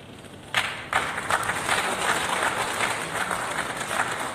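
Audience applauding, breaking out suddenly about half a second in and carrying on as a dense stretch of many hands clapping.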